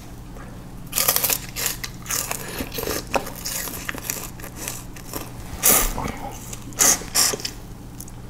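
Close-up biting and chewing of peeled sugarcane: crunchy, juicy bites in irregular bursts, with the loudest crunches about six and seven seconds in. A steady low hum runs underneath.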